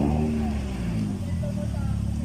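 Street ambience: indistinct voices and a low, steady traffic rumble.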